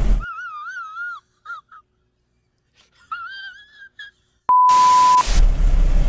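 Comedy meme sound edit: a high, wavering whine heard twice, then a sharp click and a steady beep with a burst of static about four and a half seconds in. Car cabin road and engine noise comes back just after.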